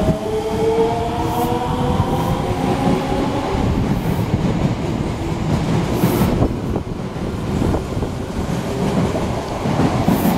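Osaka Municipal Subway 66 series electric train accelerating away from the station. Its motor whine rises in pitch and fades in the first few seconds, giving way to the rumble of the passing cars and wheels clicking over rail joints.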